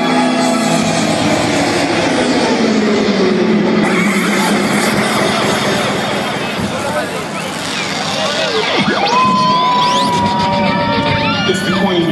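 Loud live club music over a cheering, shouting crowd. A low tone glides slowly downward in the first few seconds, and a single long high note is held and slowly sags from about nine seconds in.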